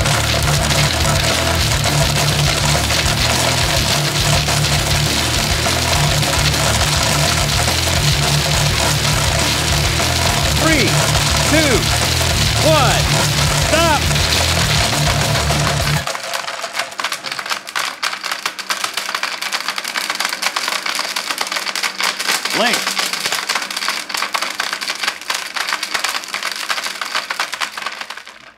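Five countertop blenders (Cuisinart, Oster, Ninja, Nutribullet and KitchenAid) running together on high, grinding and rattling plastic army toy soldiers in their jars. Most stop at once about 16 seconds in. After that a quieter blender keeps running, with plastic bits clattering, until near the end.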